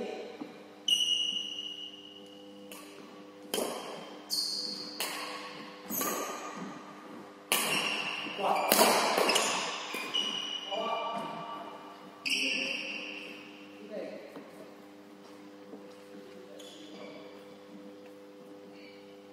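Badminton rally: sharp racket strokes on a shuttlecock, about one a second, each ringing briefly in the hall, stopping about three-quarters of the way through. A steady low hum runs underneath.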